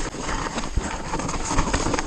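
2018 Orbea Rallon 29er enduro mountain bike descending a rough dirt trail at speed: tyres on loose dirt with repeated knocks and rattles from the bike over bumps, under a steady rush of wind on the camera microphone.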